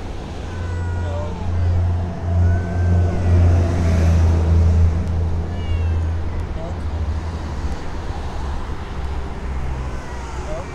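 Domestic cat meowing faintly a few times over a low steady rumble that swells between about one and a half and five seconds in.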